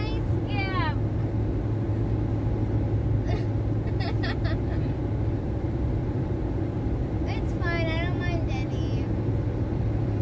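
Steady road and engine noise inside a car cabin at highway speed, a low even hum and rumble. Brief non-word voice sounds ride over it: a falling vocal glide just after the start and more voice sounds near the end, with a few short clicks in the middle.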